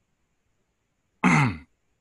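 A person clearing their throat once, a short falling sound about a second in, after a near-silent pause.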